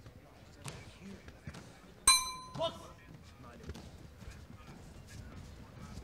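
Boxing ring bell struck to start round one: a sharp ding about two seconds in that rings briefly and cuts off, followed by a second, softer strike about half a second later.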